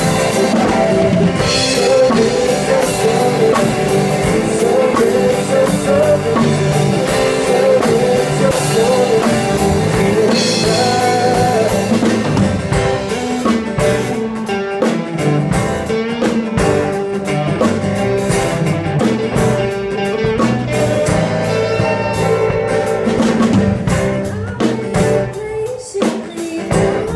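Live worship band playing with a drum kit, cymbal crashes ringing in the first half; the cymbals drop away and the music thins out about halfway through.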